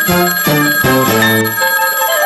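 Short musical jingle: a quick run of short notes with high ringing tones held above them, the melody gliding down and back up near the end.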